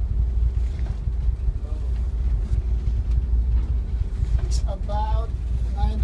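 A tugboat's engine running steadily under towing load: a constant low drone with a faint steady hum above it.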